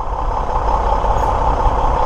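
Diesel engine of a 2002 Mack Vision CX613 semi tractor running steadily as the truck rolls slowly forward at low speed.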